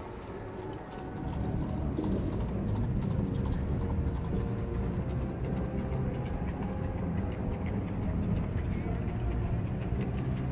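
Low, steady rumble of a moving vehicle heard from inside, growing louder about a second in, with faint voices under it.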